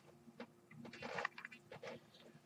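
Faint rustling of a T-shirt being handled and bunched up for folding.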